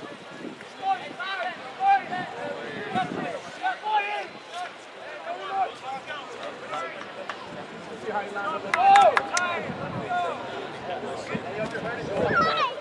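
Distant, unclear voices calling out across an outdoor soccer pitch during a stoppage in play, with a louder shout about nine seconds in.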